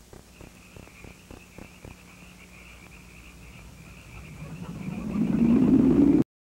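Night-time outdoor ambience from a film soundtrack: a steady, high chirring night chorus over a faint hum. A low rumble swells up over the last two seconds and cuts off abruptly.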